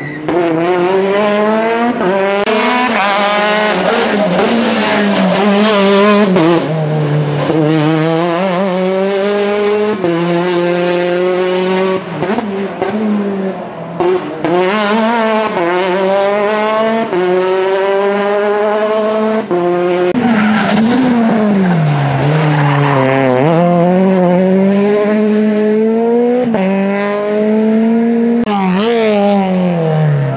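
Rally car engine pulling hard through a stage, revving loudly and continuously. Its pitch climbs through each gear and drops sharply at each shift, every two to three seconds, with longer falls as it slows for corners.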